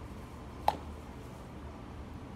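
A single short, sharp pop about two-thirds of a second in, from a sports water bottle's mouthpiece at the lips, over a low steady hum.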